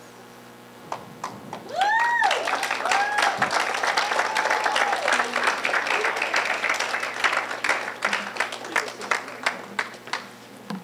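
Audience applauding: dense clapping begins about two seconds in and thins out near the end, with a few voices calling out in the first few seconds.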